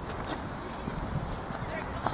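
Outdoor soccer-match ambience: faint distant voices of players and spectators over low outdoor noise, with a few soft knocks.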